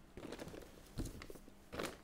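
Thin plastic shipping bag crinkling and rustling as it is handled and lifted out of a cardboard box, with a knock about halfway through.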